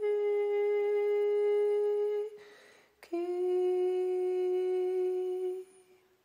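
Music: a voice humming two long held notes, the second a little lower, with a short breath between them. It stops near the end.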